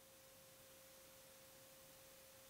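Near silence, with one faint steady pure tone held throughout.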